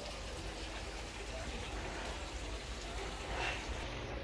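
Steady rush and splash of water flowing through a hatchery's recirculating water system: an even hiss with a low hum underneath.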